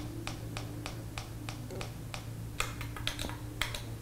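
Plastic button on a Brinno TLC200 Pro timelapse camera clicked repeatedly under a thumb, stepping the interval setting down, about three clicks a second and coming faster near the end.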